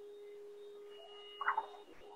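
A faint, steady tone held at one pitch, stopping just before the end, with a brief soft sound about a second and a half in.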